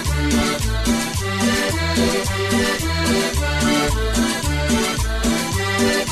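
Live cumbia band playing an instrumental passage without singing: a bouncing bass line at about two notes a second, with percussion and a melody over it.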